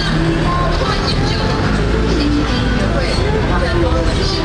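Busy street ambience: steady road-traffic noise mixed with people's voices.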